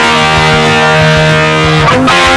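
Distorted electric guitar, a Gibson Les Paul through a Blackstar amp, holding one ringing chord for nearly two seconds before the next change, in a hard-rock riff.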